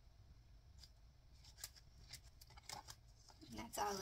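Faint handling noise from a clear plastic ring binder and its zippered pouches: a few soft clicks and rustles as the pages are moved and the binder is lifted shut. A woman starts speaking near the end.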